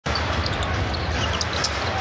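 A basketball being dribbled on a hardwood court over steady arena crowd noise.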